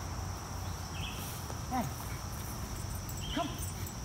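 A man's two short calls to a dog, "Hey" and then "Come", over a steady high-pitched outdoor insect drone.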